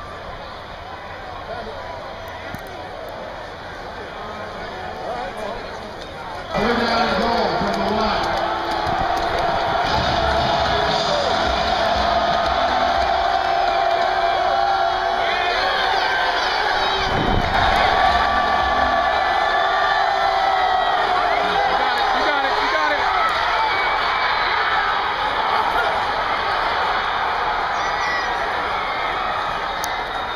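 Football stadium crowd: a lower murmur at first, then from about six and a half seconds in a sudden, loud outburst of cheering and shouting that carries on, with some long held tones mixed in.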